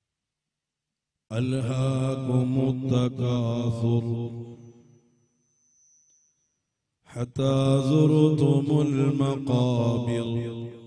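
A man chanting a Quran recitation in Arabic in a slow, melodic style. There are two long, drawn-out phrases: the first starts about a second in, and a pause of about two seconds comes before the second.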